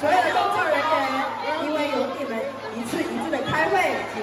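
Speech only: people talking, with voices overlapping as chatter, in a large room.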